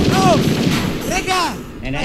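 Hardcore techno track in a DJ mix: a sudden sampled blast of noise like gunfire hits at the start and dies away over about a second and a half. Short chopped vocal stabs sound over it twice.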